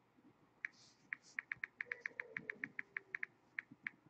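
Faint key clicks from a Samsung smartphone's touchscreen keyboard as it is typed on: about twenty short, light clicks, irregularly spaced, some in quick runs.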